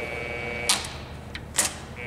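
Milling machine power feed: its steady motor whine drops away less than a second in as the engagement lever is shifted to reverse the feed, followed by three sharp mechanical clicks from the lever and clutch.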